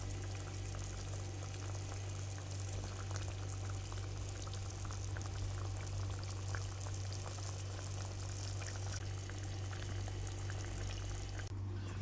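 Potato curry in a thin, watery gravy simmering in a pan, with faint bubbling and small pops, over a steady low hum.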